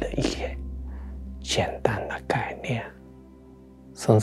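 A man speaking softly in Mandarin, in two short phrases, over quiet background music with sustained tones.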